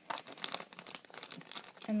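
Clear plastic bag crinkling as it is handled, a quick, irregular run of crackles.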